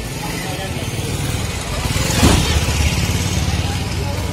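Street traffic with a steady low engine rumble; a motor vehicle passes close, loudest a little past halfway through.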